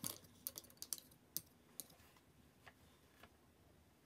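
A quick run of light, sharp clicks and taps, about a dozen in the first two seconds, then two faint ones, from painting tools being handled while the brush is off the paper.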